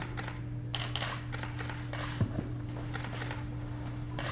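Light, irregular clicks and short hisses over a steady low hum, with one sharper click a little over two seconds in.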